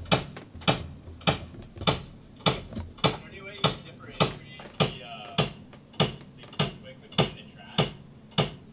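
Kick drum struck steadily on its own, one even hit a little under every second and a half of a second apart, for a level check of its microphone during drum tracking.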